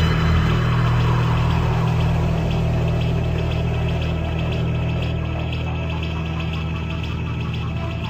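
A low, steady droning hum from the film's soundtrack, slowly fading, with a faint fast ticking pattern higher up from about two seconds in.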